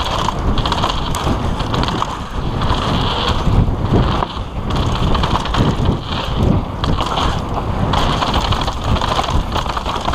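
Mountain bike running fast down a dirt trail: wind buffets the camera microphone over the tyres rolling on loose dirt, and the bike rattles over the bumps.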